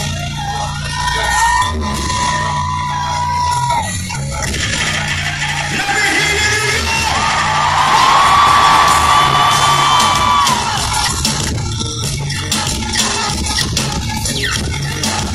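Live concert music played loud over an arena PA and picked up by a phone in the crowd, with two long held high notes, the second one louder, and the crowd yelling along.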